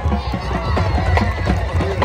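Marching band playing, with drum strokes over sustained low brass, and spectators talking close by.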